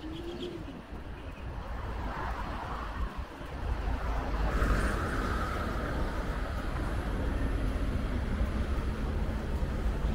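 Road traffic on the street alongside: vehicle engine and tyre rumble that grows louder about three and a half seconds in and then stays steady, with a brief bird call near the start.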